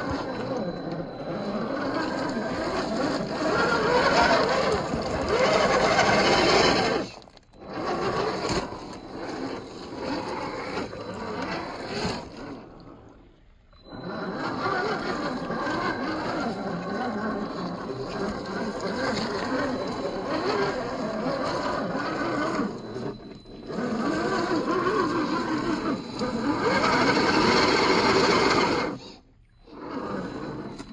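Brushed 540 electric motor and geared drivetrain of an SCX10 II RC rock crawler whining under throttle as it climbs over rocks, the pitch wavering with the load. It cuts off briefly about seven seconds in, around thirteen seconds in, and again near the end as the throttle is released.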